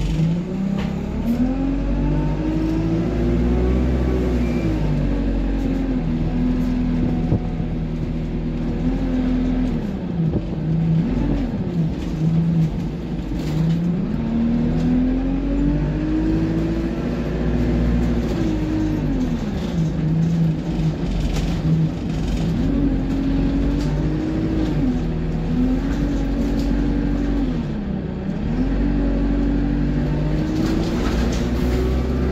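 Diesel engine of a single-deck bus heard from inside the passenger cabin, revving up as the bus accelerates and dropping in pitch at each gear change of the automatic gearbox, several times over. The revs are held high, as in kickdown and power-mode driving.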